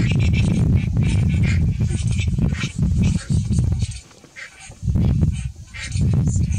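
Harsh, honking bird calls repeated over a loud low rumble that drops away for about a second, four seconds in.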